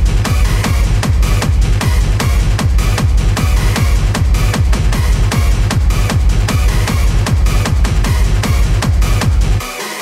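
Hard techno DJ mix: a fast, steady four-on-the-floor kick drum with heavy bass under dense synth layers. The kick and bass drop out just before the end.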